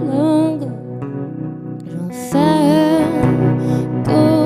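A woman singing a slow, gentle song live, accompanied by her own hollow-body electric guitar. She sings two phrases with wavering held notes, with a short instrumental gap between them.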